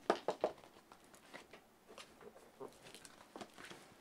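Light handling of paper and card: a few quick taps and rustles as a die-cut card piece is handled and laid down on a cutting mat. The sharpest clicks come in the first half second, then only faint scattered ticks.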